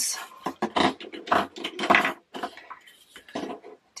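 Small plastic bottles of diamond-painting drills clicking and knocking against each other and the tabletop as they are gathered and shuffled by hand, in quick irregular clatters that are busiest in the first two seconds and thin out later.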